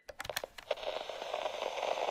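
A few quick sharp clicks right after the music cuts off, then a steady hiss of background room noise.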